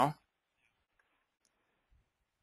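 The last syllable of a man's speech, then near silence broken by a couple of very faint clicks from a computer mouse.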